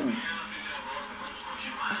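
Music and voices from a television playing in the background.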